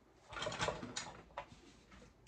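Artificial greenery rustling as it is handled and pushed into an arrangement, then two light clicks about a second in, as tools on the table are picked up.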